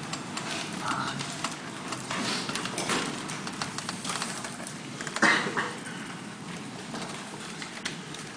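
Lecture-hall room noise while students work on a question: scattered small clicks and knocks from desks and handling, under quiet student chatter, with one louder brief sound about five seconds in.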